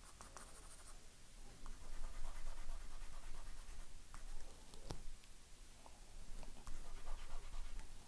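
Graphite pencil scratching faintly on drawing paper in short, uneven strokes, with one light tick about five seconds in.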